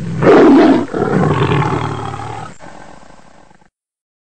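Sound effect for an animated logo intro: a loud, rough, low, growl-like sound. It is loudest in the first second, dips briefly, swells again, then fades and stops sharply at about three and a half seconds.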